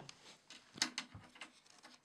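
A few light, scattered clicks and knocks from a snare drum being handled and a drum key turning its tension rods, the sharpest just under a second in.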